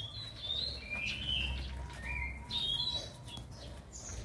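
Small birds chirping: several short, high calls, some sliding in pitch, over a low steady rumble.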